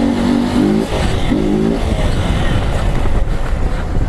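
Motorcycle engine revving, its note climbing in pitch about a second in as the rider lifts the front into a wheelie. It is followed by a loud low rumble of wind and road noise as the bike runs on.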